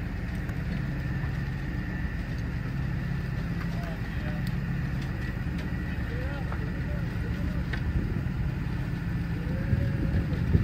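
A crane's engine running steadily with a low drone as it lifts a rebar cage upright, with a few faint metallic ticks.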